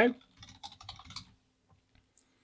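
Typing on a computer keyboard: a quick run of keystrokes through the first second or so, which then stops.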